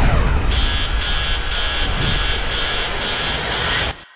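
Cinematic sound design: a loud, steady rumbling rush of noise with a high beeping tone pulsing about twice a second from half a second in. It all cuts off suddenly just before the end.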